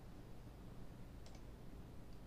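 Near silence with a faint steady low hum and a single faint computer mouse click about a second in.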